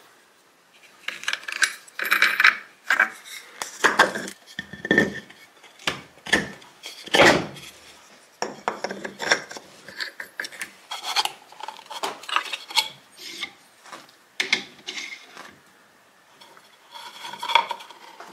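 Hand-handling noises of workshop parts: irregular knocks, clinks and rubbing as a small aluminium pulley comes out of a metal vise and a nut is turned down by hand onto a wooden pulley on a steel spindle. The loudest knock comes about seven seconds in.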